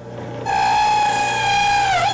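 Electric shop machine with a motor hum, then a loud steady whine with hiss for about a second and a half, dipping slightly in pitch as it stops.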